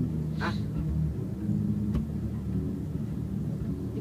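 Low, steady hum and rumble from the band's amplifiers and sound system left on between songs in a rehearsal studio, with a brief spoken "ah" about half a second in and a single click near two seconds.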